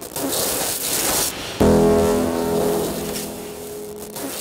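Electronic output of a light-sensor-controlled sound installation: bursts of hissing noise, then about one and a half seconds in a sudden pitched synthesized tone, rich in overtones, that slowly fades to a single steady note.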